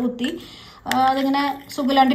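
A woman talking in short phrases, with a quieter pause about half a second in.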